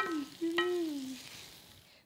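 Okra and shallots sizzling in oil in a frying pan, stirred with a wooden spoon, fading away near the end. A voice hums briefly, a falling 'mm', in the first second.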